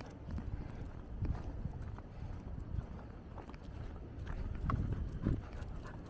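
Footsteps on a concrete sidewalk, a run of faint irregular taps over a low rumble.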